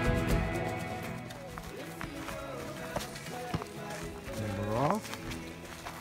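A pop song fading out over the first second, then a few short words from voices, one rising in pitch near the end, with scattered footsteps on dry leaves.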